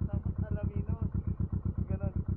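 Motorcycle engine idling with a quick, even pulse.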